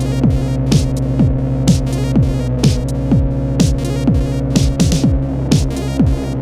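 Analog hardware electronic music. A pitch-dropping kick drum lands about twice a second over a steady, throbbing bass drone, with bright noise hits on top. A quick roll of kicks comes about five seconds in.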